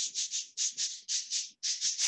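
Rapid, even shaker-like rattling, about six or seven strokes a second.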